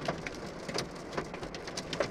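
Hail striking a car's roof and windshield, heard from inside the cabin: many irregular sharp ticks over a steady hiss.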